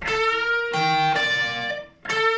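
Electric guitar playing a short lick: a held note on the G string, bent up at the 14th fret, with higher notes from the 15th fret of the B and high E strings joining it about three-quarters of a second in. The notes ring and then fade just before a new note is struck.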